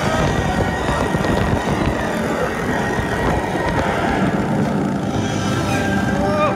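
Intamin launched roller coaster train running at speed along the track: a loud, steady rush of wind and track rumble, with music beneath it.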